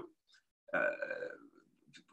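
A man's drawn-out hesitation sound, one held "uhh" of just under a second starting about two-thirds of a second in, with quiet before and after it.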